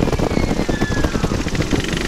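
Flexwing microlight trike in flight with its Cors-Air Black Bull two-stroke engine throttled back: rough, buffeting rush of airflow over the microphone, with a faint whine falling in pitch, during a power-off climb into a stall.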